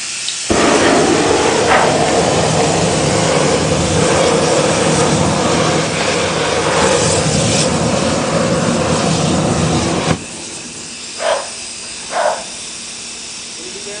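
Hose-fed flamethrower spraying and firing a jet of flame: a loud, steady rushing hiss for about ten seconds that cuts off suddenly. A couple of short bursts follow.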